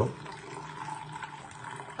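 Coffee pouring in a thin, steady stream from one paper cup into another paper cup as it fills.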